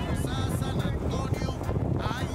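Wind buffeting the camera microphone in a steady low rumble, with faint distant voices of people at the track.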